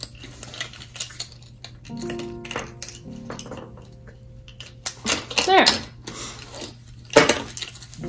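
Metal keys on a keyring clinking in a scattered run of short, sharp clicks as they are handled.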